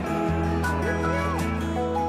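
Background music with held chords over a steady bass line.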